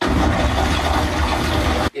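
A loud, steady rushing roar with a deep rumble underneath from the TV episode's soundtrack. It starts suddenly and cuts off abruptly near the end.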